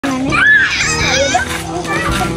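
High-pitched children's voices calling out during rough play, over steady background music.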